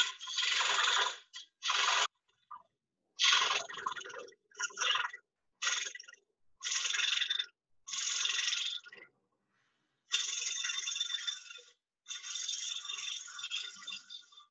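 Quarter-inch bowl gouge cutting into the inside of a spinning wooden bowl on a lathe, undercutting under the rim. It comes as about nine short cuts, each well under two seconds, with brief pauses between.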